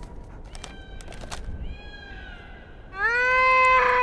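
A cartoon giant bird calling to her chicks: a fainter, wavering call about two seconds in, then a loud, long, high call from about three seconds that holds steady and sags slightly in pitch.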